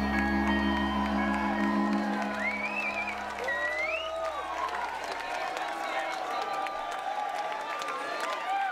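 A live band's final chord ringing out and fading over the first few seconds, with the bass dying away, while the crowd applauds and cheers, with a couple of rising shouts.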